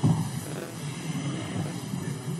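Indistinct murmur of many voices in a large chamber, with a brief thump right at the start.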